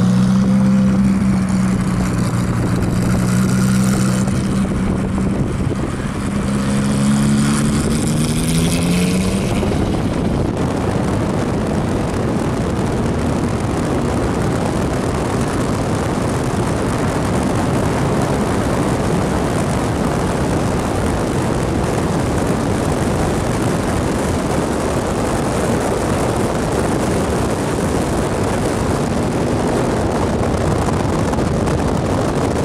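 Ferrari F430 V8 engine running as the car drives alongside, its revs rising about eight to ten seconds in. After that the engine note gives way to steady wind and road rush from a moving car.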